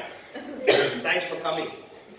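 Brief talk from people in a small room, with a cough about two-thirds of a second in.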